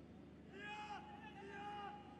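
Faint pitch-side ambience of a football match, with two distant high-pitched shouts from the field, each about half a second long and falling off at the end.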